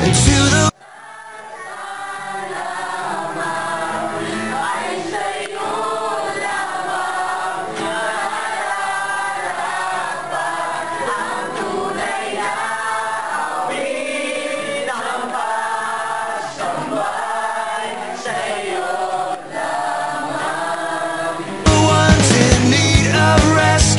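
A group of people singing a worship song together, with no drums or bass under the voices. The singing fades in about a second in, after the rock song cuts out, and the rock song returns just before the end.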